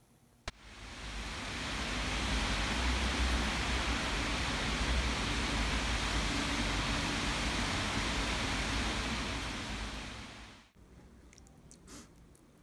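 A short click, then a steady rushing outdoor noise that fades in, holds for about nine seconds with a low rumble beneath it, and fades out shortly before the end.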